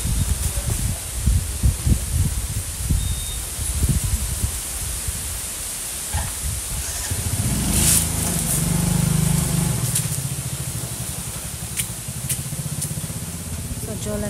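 Motor scooter engine running, a steady low hum that comes in about halfway through and fades near the end, over irregular low rumbling, with a few sharp clicks.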